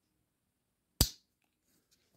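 A single sharp click or knock about a second in, short and loud against near silence.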